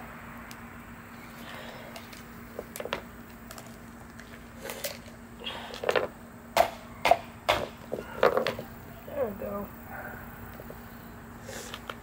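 A run of sharp clicks and knocks as a tool is worked against a split coconut's hard shell, coming thickest between about five and eight and a half seconds in, over a faint steady hum.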